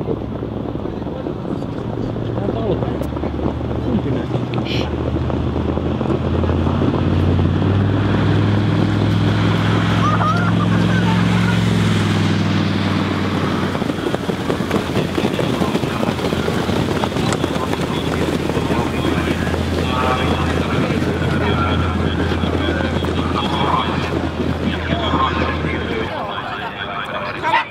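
A field of harness-racing trotters and sulkies passing close by. The noise builds to a peak about twelve seconds in and then fades, over a steady low hum and wind on the microphone.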